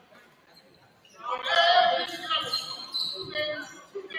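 People's voices calling out in a large, echoing gymnasium during a basketball game, starting about a second in after a near-quiet moment.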